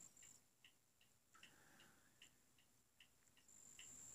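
Near silence, with faint, evenly spaced ticking about twice a second.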